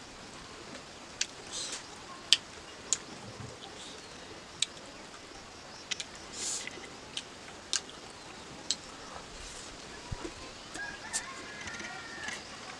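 Close-up eating sounds: wet chewing clicks and lip smacks at irregular intervals as a mouthful of rice and pickle is chewed, with fingers working the rice.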